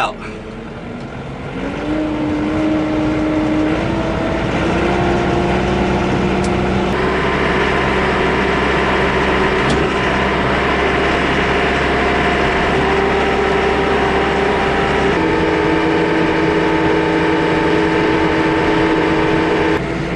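Yanmar YT359 tractor's diesel engine, heard from inside its closed cab, picking up revs about two seconds in as the tractor pulls away with its front snowplow, then running steadily under way. The engine speed steps up a little over the next few seconds and shifts once more about fifteen seconds in.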